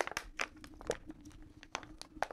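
A thin plastic water bottle crinkling and clicking in the hand as a man drinks from it and handles it: about half a dozen short, sharp crackles, quiet.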